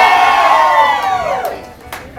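Concert audience cheering and shouting, the voices rising and then falling in pitch, dying down about a second and a half in.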